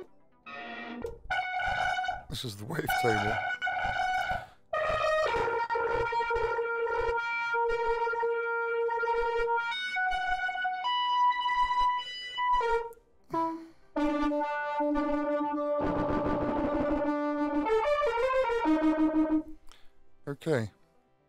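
Notes played on a DIY synth patch running on an Axoloti board: buzzy pulse-width-modulated square-wave oscillator tones through a filter. It plays one note at a time: a few short wavering notes, then long held notes at changing pitches. About two-thirds through there is a noisy, resonant sweep with gliding pitches, and the output is saturating a bit.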